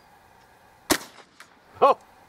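A single 12-gauge shot about a second in, a sharp crack firing a homemade slug made from an electric-motor commutator, with a short ringing tail and a fainter crack about half a second later.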